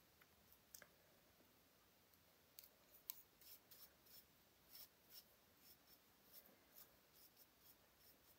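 Near silence with faint, irregular soft ticks and scrapes of a flat paintbrush dabbing glue-and-glaze over tissue paper on a glass jar.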